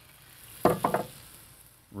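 Liquid faintly sizzling in a hot cast-iron Dutch oven. A little over half a second in there is a quick clatter of about three sharp knocks.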